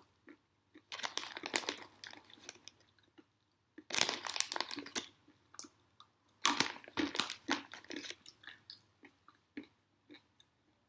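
Crunching, crackling noises close to the microphone in three bursts of about a second each, starting about one, four and six and a half seconds in, with scattered single clicks between them.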